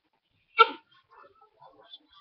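A puppy giving one short, high whimper about half a second in.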